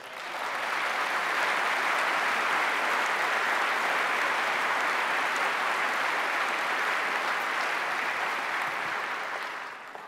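A large conference-hall audience applauding: steady clapping that swells up within the first second, holds, and dies away just as speech resumes at the end.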